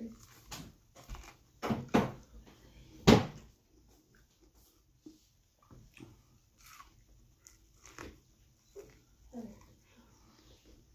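A person biting into and chewing corn on the cob, with short, sudden mouth noises scattered through, the loudest about three seconds in.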